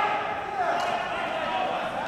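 Men's raised, shouting voices echoing in a large gymnasium during a ball hockey game, with a sharp knock about a second in.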